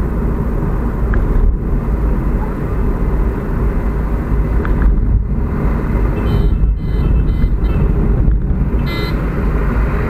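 Car driving along a road, heard from inside the cabin: a steady, loud low rumble of engine and tyre noise.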